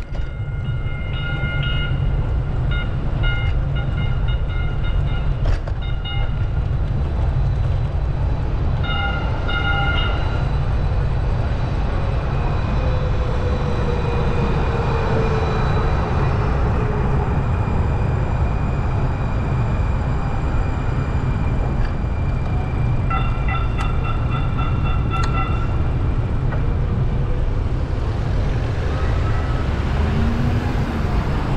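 Light-rail train alongside, its bell ringing in quick repeated strokes in three spells, with a falling whine from the train about midway. A steady low rumble runs under it all.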